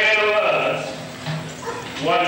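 A man's voice preaching loudly in a drawn-out phrase that ends about a second in, followed by a brief lull.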